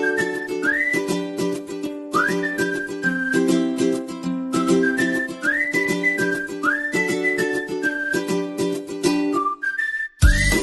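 Background music: a whistled melody that swoops up into its notes, over plucked-string chords at a steady, bouncy rhythm.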